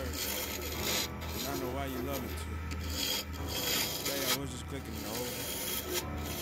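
Hand-held abrasive sanding a spinning mallee burl and resin pen blank on a wood lathe: a steady, rasping rub over the lathe's low hum.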